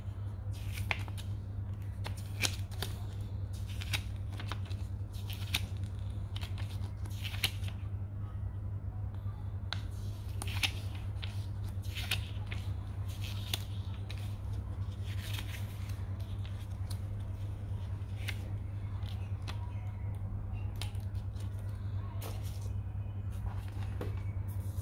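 Paper rustling and crisp crinkles as a small printed manual is handled and its pages are flipped, in many short irregular bursts over a steady low hum.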